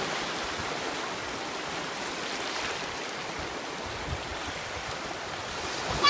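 Small ocean waves breaking and washing through the shallows: a steady rush of surf.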